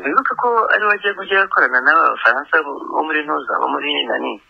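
Speech only: a person talking without pause. The voice sounds narrow, like a radio or phone line.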